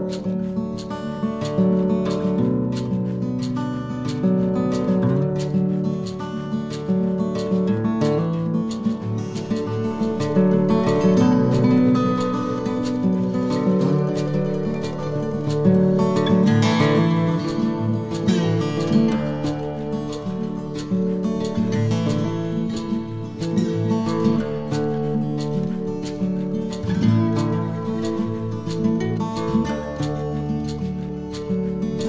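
Instrumental background music led by acoustic guitar, played with a steady strummed rhythm.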